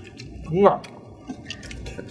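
People eating balut in scallion-oil sauce: scattered small wet clicks and smacks of chewing and spoons. About two-thirds of a second in, a short voiced grunt.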